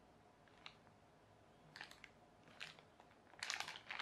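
Faint crinkling of small clear plastic bags being handled, in a few scattered brief rustles with a busier cluster near the end.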